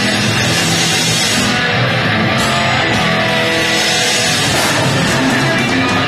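A rock band playing live in a heavy-metal style, loud and continuous, with electric guitar to the fore.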